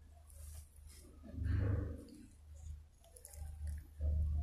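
Quiet room tone with a steady low hum, and one brief soft noise about a second and a half in.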